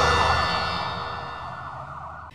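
The tail of a TV news ident sting: a sustained electronic chord of several steady tones, fading away steadily.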